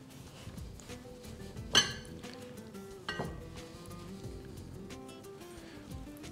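Soft background music, with two sharp clinks about a second and three-quarters and three seconds in: a glass mixing bowl knocked as a chicken breast is pressed into breadcrumbs.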